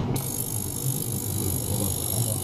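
Small tabletop ultrasonic cleaning bath running: a steady low buzz, with a bright high hiss that starts sharply just after the beginning and holds steady.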